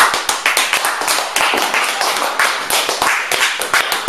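Audience applauding at the close of a talk, a dense patter of separate hand claps.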